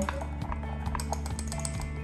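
Light, irregular clicks and taps of spoons against a ceramic mixing bowl and a spice jar while ingredients are stirred and scooped, over quiet background music.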